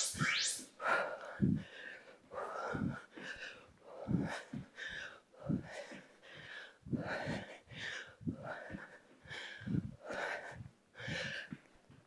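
A woman breathing hard in short rhythmic exhales while doing jumping gate swings. Repeated soft thuds come from her trainers landing on the exercise mat.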